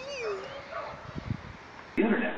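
A dog whining briefly: one short falling whine near the start.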